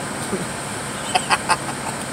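Steady road and engine noise inside a moving car's cabin, broken a little over a second in by three short, sharp pitched bursts in quick succession, like a brief laugh.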